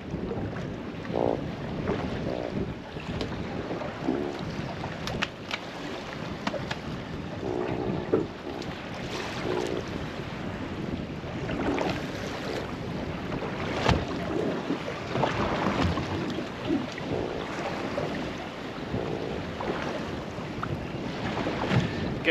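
Wind buffeting the microphone and sea noise around a small boat, with a few brief faint grunts from a freshly landed John Dory and occasional clicks and knocks of handling.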